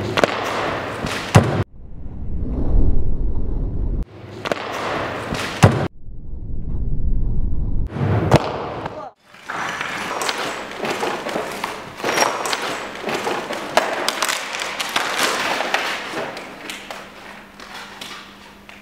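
Several sharp thuds, each closing a short loud stretch over a low rumble, then from about halfway a dense rustling and clattering with low, indistinct voices.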